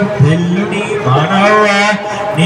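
A voice singing a devotional chant in long held notes, sliding up into each one, with a slight waver in the second second.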